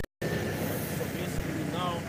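A brief dropout to dead silence, then a steady low rumble of outdoor street traffic, with a faint voice near the end.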